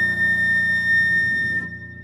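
Concert flute holding one long high note, loud at first and then dropping to a soft, thin tone shortly before the end.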